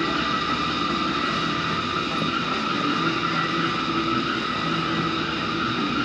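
A steady mechanical drone, even in level and unchanging throughout.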